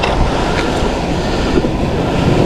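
Wind buffeting the microphone in a steady, dense rumble, with waves washing on the shore underneath.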